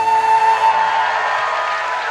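The last long held note of live folk dance music, played on a wind instrument, fades out about a second in, as audience applause and cheering swell.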